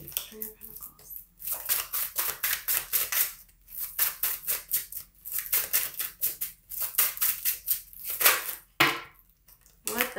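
A deck of tarot cards being shuffled by hand: rapid runs of card snaps in three long bursts, each lasting one to three seconds, with short pauses between.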